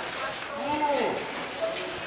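Speech only: people in a small group talking, their words indistinct.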